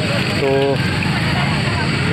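One short spoken word, then a steady loud low rumble of outdoor background noise with no other clear event.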